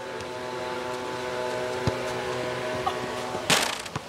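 A steady mechanical hum like a running engine, with a single sharp knock about two seconds in. A short, loud clatter of impacts comes near the end, as the hum stops.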